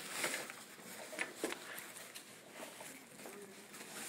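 Scattered rustles and light handling clicks as MAST anti-shock trousers are wrapped around a patient's left leg.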